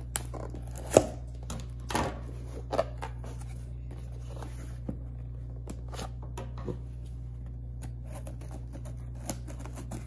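Scissors cutting through the tape and cardboard of a small shipping box, with the cardboard flaps being handled. Scattered sharp clicks and knocks, the loudest about a second in.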